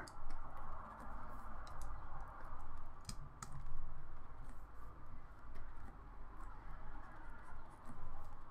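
Stylus dragging across a drawing tablet in short, scratchy painting strokes, with a few sharp clicks scattered through.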